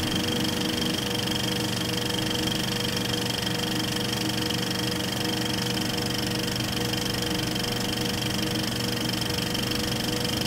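A steady, unchanging drone: an even hiss with a held high whine over a low hum.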